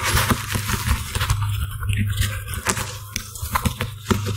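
Clip-on lapel microphone being repositioned on a shirt collar: loud rustling, scraping and clicks of fingers and fabric rubbing the mic, over a steady low hum. The mic is being moved because it was picking up noise.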